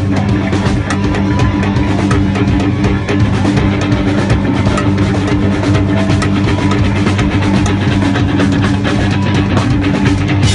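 Live rock band playing a loud, heavy song with distorted electric guitars, bass and a full drum kit with cymbals, heard unmixed from side stage.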